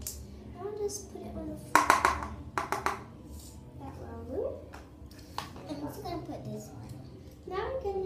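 Young girls talking quietly, with a quick run of sharp knocks and clatter about two seconds in as plastic slime containers are handled.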